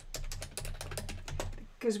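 Typing on a computer keyboard: a quick run of keystrokes as a word is typed, stopping shortly before the end.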